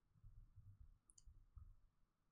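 Near silence: room tone, with a faint short click about a second in.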